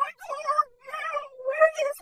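A high-pitched cartoon voice crying out in a quick run of short strained cries, about two a second, with no clear words.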